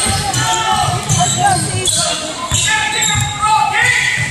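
A basketball being dribbled on a hardwood gym floor, with repeated short bounces, in a large echoing gym.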